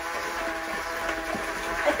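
Electric hand mixer running steadily with a whining motor tone, its beaters mixing flour into cookie dough.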